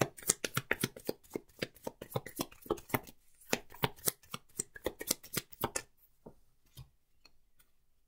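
A tarot deck being shuffled by hand: a quick run of card snaps, about four or five a second, thinning after about six seconds to a few separate light clicks as the deck is set down and cut into piles.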